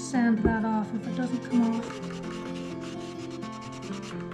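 Squeaky rubbing and scraping of something against a hard surface, loudest in the first couple of seconds, over background music.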